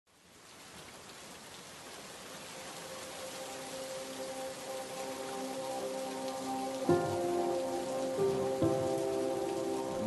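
Steady heavy rain falling, fading in from silence and growing louder. Soft sustained music notes swell beneath it, and a fuller chord comes in about seven seconds in.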